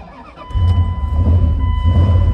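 A vehicle's engine is cranked by the ignition key and catches about half a second in, then runs steadily at idle. A steady electronic tone from the dash sounds along with it.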